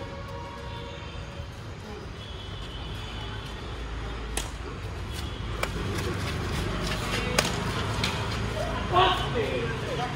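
Badminton rackets striking a shuttlecock during a rally: about four sharp, short hits, spaced unevenly, over a steady low background rumble. Voices call out near the end.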